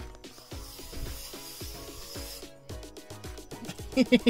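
An aerosol can of bug spray hissing in one steady spray of about two seconds, heard over background music with a repeating deep bass beat.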